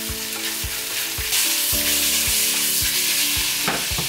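Pork tocino sizzling in hot oil in a nonstick wok while it is stirred with a wooden spatula; the sizzle grows louder about a second and a half in.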